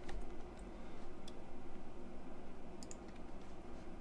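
A handful of light computer-mouse clicks, two close together about three seconds in, over a steady low background hum.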